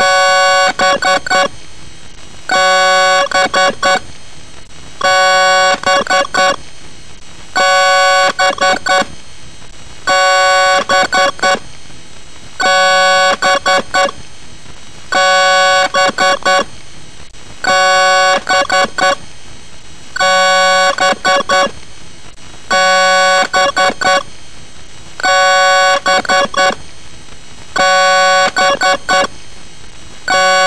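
A short synthesizer phrase looped over and over: a held chord followed by a few quick stabs, repeating about every two and a half seconds, over a steady hiss.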